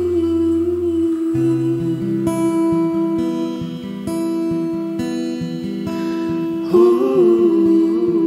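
Live acoustic ballad: an acoustic guitar picked softly under a long held wordless vocal note, a hum or 'ooh', that wavers and bends near the end. A low bass note drops out about a second in.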